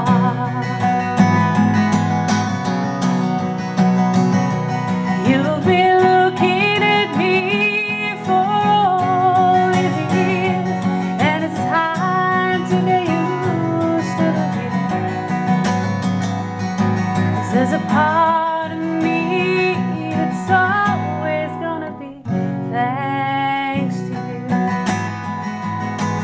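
A woman singing a ballad while strumming an acoustic guitar, her sung lines wavering with vibrato over the steady strum. The voice drops out briefly near the end while the guitar plays on.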